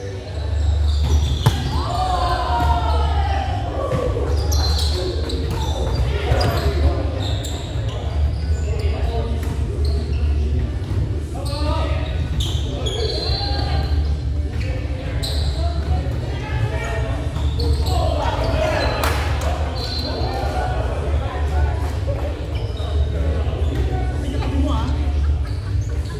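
Volleyball being served and struck in a rally in a large echoing gymnasium: scattered sharp ball hits, with players calling out and shouting across the hall, over a steady low hum.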